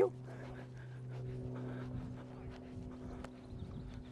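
A horse's hoofbeats on a sand arena at canter, heard faintly over a steady low hum.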